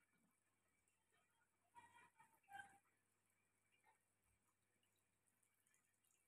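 Near silence, with a couple of faint, brief sounds about two seconds in.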